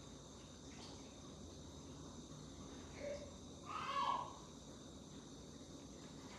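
Quiet room tone with a faint steady hiss. There is one short, louder sound about four seconds in, and a weaker one just before it.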